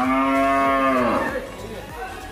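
A cow mooing once: a single loud call of about a second that drops in pitch as it ends.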